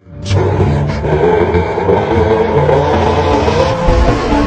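A loud, dense rumbling sound starts abruptly out of silence, with a sharp hit about a quarter of a second in. It opens the soundtrack of a TikTok anime edit.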